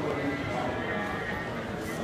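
A person's voice, continuous, with no gaps.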